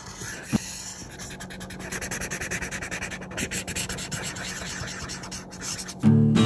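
Felt-tip marker colouring on paper: quick, repeated back-and-forth strokes of the tip scratching and rubbing across the sheet.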